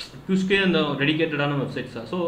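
A man speaking; only speech, no other sound.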